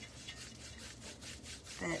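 A paintbrush stroked quickly back and forth across a tray's surface, a soft repeated brushing and rubbing.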